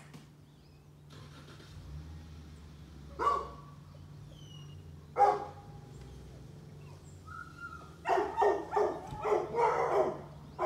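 Dog barking: single barks about three and five seconds in, then a quick run of about six barks near the end.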